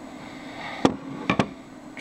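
Sharp knocks: one a little under a second in, then two close together about half a second later, over faint steady room hum.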